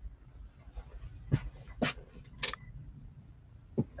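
About four short, sharp clicks spread unevenly over a few seconds, over a faint low hum.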